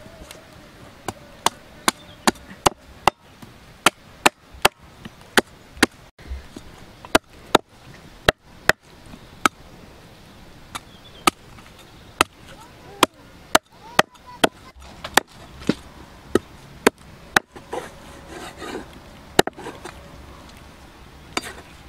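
Cleaver chopping raw meat and bone on a wooden log chopping block. The chops are sharp and separate, coming irregularly at one or two a second, with a few short pauses.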